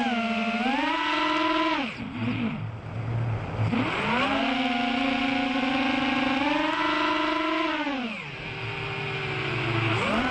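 Five-inch FPV quadcopter on a 3S battery, its brushless motors whining from the onboard camera, the pitch rising and falling with the throttle. The whine drops to a low hum twice, about two seconds in and again near the end, as the throttle is cut and then brought back up.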